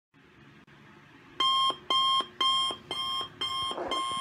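Alarm clock going off: a repeated electronic beep, about two a second, starting about a third of the way in.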